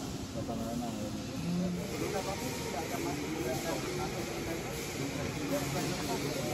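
Indistinct voices of several people talking at a distance, over a steady background hiss that grows slightly about two seconds in.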